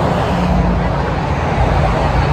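Road traffic on a busy street: cars driving past close by, a steady rumble with an engine hum.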